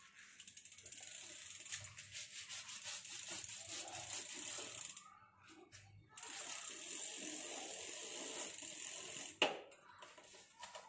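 Bicycle rear freewheel hub ticking rapidly as the rear wheel spins, breaking off about five seconds in and then starting again. A sharp knock near the end.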